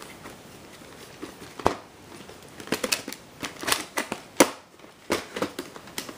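Hard plastic VHS clamshell case being handled, opened and the videocassette lifted out: a series of sharp plastic clicks and clacks, the loudest about one and a half and four and a half seconds in.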